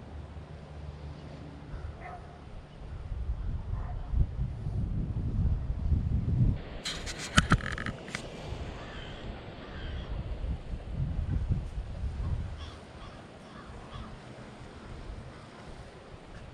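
Wind rumbling on the microphone in gusts, with a short run of bird calls about seven seconds in.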